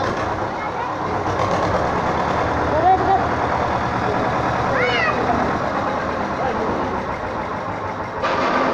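Indistinct voices of a group of children over a steady low hum, with one high voice rising and falling about five seconds in.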